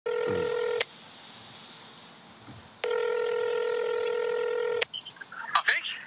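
Ringback tone of an outgoing phone call playing through a mobile phone's speaker: a steady tone that sounds briefly, stops for about two seconds, then sounds again for about two seconds while the call rings out. A short burst of voice comes through near the end as the call is picked up.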